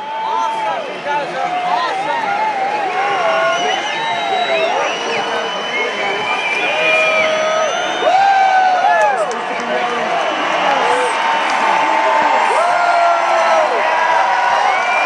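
Large concert crowd cheering, with many voices whooping and yelling over one another; it gets louder about eight seconds in.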